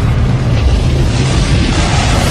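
A loud, steady deep rumble: a low drone under a wash of noise, the sound bed of a dramatic promo film.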